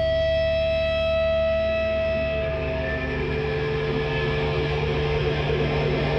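Electric guitar played through effects pedals, holding sustained droning tones with no drums. About halfway through the tones shift to a lower, rougher drone.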